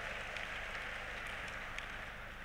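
Faint scattered applause from a large audience: a soft hiss of clapping with a few separate claps, slowly dying away.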